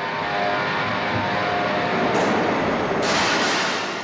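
Glass grinding and polishing machinery running: a steady industrial noise with faint hum tones. About three seconds in, a brighter hissing noise joins it.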